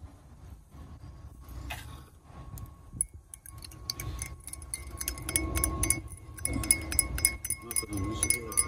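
Metal teaspoon stirring sugar into tea in a glass mug, clinking quickly and repeatedly against the glass. The clinks start about three seconds in and grow louder.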